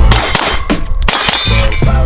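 Ruger PC Carbine, a 9mm rifle, firing a quick string of shots, about three a second, with steel targets ringing as they are hit.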